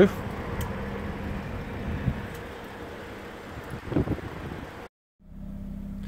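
Steady background noise with a faint low hum, with no clear event standing out. The sound drops out briefly about five seconds in, then the hum resumes slightly stronger.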